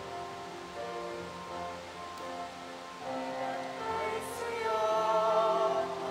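Choir singing a slow hymn with long held notes, swelling louder in the second half.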